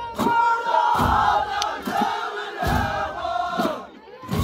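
Ahwash chorus: many men singing together in one sustained group chant, with a few frame-drum strokes beneath. The voices fade out near the end.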